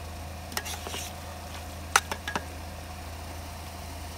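A spoon scraping and scooping cooked rice in a metal pot, with a few light scrapes early on, a sharp clink about two seconds in and a couple of smaller clicks after it, over a steady low hum.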